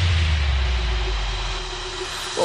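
Airy rushing noise with a low rumble beneath, slowly fading away: an edited-in transition whoosh effect as the background music ends.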